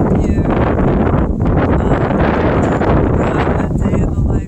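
Wind blowing across the microphone, a loud, steady low rumble.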